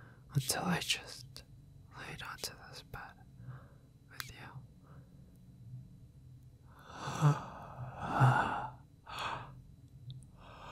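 A man whispering in short, breathy phrases, with two longer breathy exhales like sighs about seven and eight seconds in.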